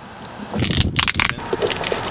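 Cardboard box being torn open and handled, a run of crunching and crackling starting about half a second in.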